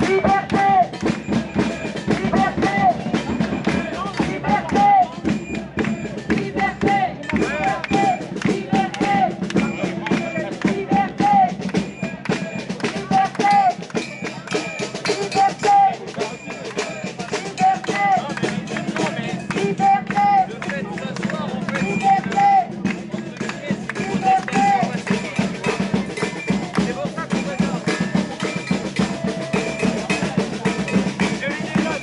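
Drums played by hand in a fast, steady rhythm, with a murmur of crowd voices underneath.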